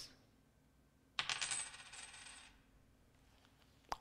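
Silver coins jingling and clinking together. The jingle starts suddenly about a second in and rings for about a second and a half.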